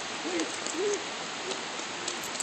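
Heavy rain falling steadily, a continuous hiss, with a few short, faint, low voice-like sounds in the first second.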